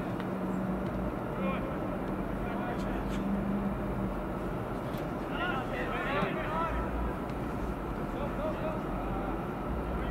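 Distant shouting voices of soccer players on the pitch, over a steady outdoor background noise. A low steady hum sounds for the first few seconds, and the shouts come between about five and seven seconds in.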